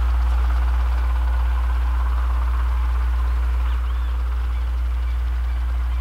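Steady low hum of a running motor.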